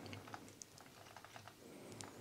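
Faint, scattered light clicks of a plastic building-block toy monster truck being rolled by hand over a wooden table.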